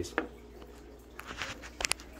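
Soft handling noises with a few small clicks, and two brief sharp clicks near the end.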